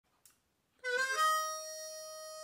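Seydel blues harp (harmonica) starting to play about a second in: a brief lower note, then one long held note.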